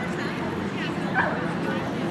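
A dog gives a short high yip about a second in, over background chatter of people.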